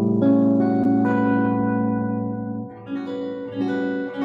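Electric guitar chord, the rootless A13 voicing, struck and left to ring clean and steady, then fading as a second set of notes is picked about three seconds in.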